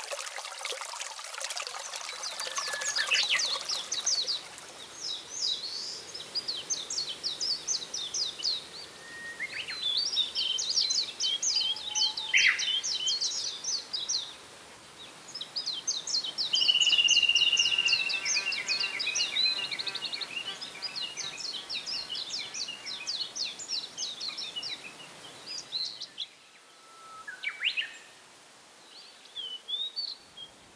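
Small songbirds singing and chirping in quick trills and twitters, phrase after phrase, with one long steady whistled note about halfway through. A trickling-water sound fades out in the first second or two.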